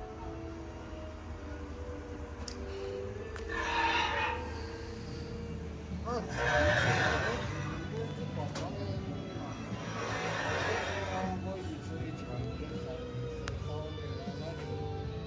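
Animatronic Carnotaurus playing recorded dinosaur roars from its built-in speaker: three roars, about four, seven and ten and a half seconds in, the middle one the loudest.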